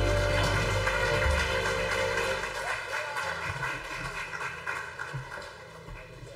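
A live band's song ending: the last held notes and deep bass stop about a second in, and a cymbal-like wash fades steadily away over the following seconds.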